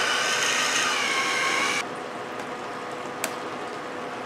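Battery-powered hands-free electric can opener running around the rim of a can, a steady motor whine that cuts off suddenly about two seconds in. After it comes a quieter steady hiss with a single click near the end.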